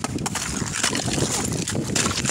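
Thin shelf ice crunching and cracking underfoot, a dense run of crackles and clicks.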